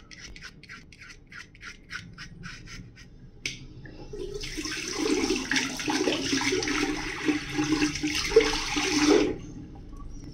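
Safety razor scraping through shaving foam and stubble in short quick strokes, about three a second. After a click, a louder steady rushing like running tap water lasts about five seconds, fitting the razor being rinsed, and stops shortly before the end.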